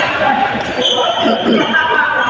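Many overlapping voices talking and calling in a large, echoing sports hall, with short impacts from play on the badminton courts.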